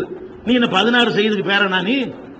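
A man speaking into a microphone, starting after a short pause about half a second in.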